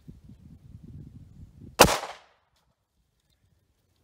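A single 9mm pistol shot from a Taurus GX4 with a 3.1-inch barrel, firing a 115-grain standard-pressure hollow point: one sharp report a little under two seconds in, with a short echo dying away. A faint low rumble runs before it.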